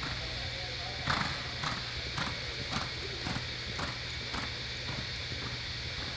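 Reining horse loping on arena dirt: a regular beat in time with its stride, about two a second, starting about a second in and dying away after about seven beats.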